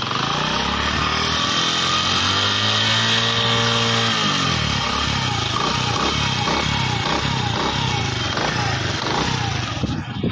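A brand-new Honda CD70's small single-cylinder four-stroke engine, just started for the first time. It is revved up over the first second, held there for about three seconds, then drops back to idle about four seconds in. Its sound is normal in the owner's view.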